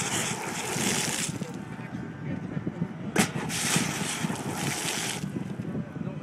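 Pop-jet fountain jets spraying up from the paving: a hiss of spray that dies away about a second in, then a sharp pop about three seconds in as the jets fire again and spray for about two seconds before cutting off.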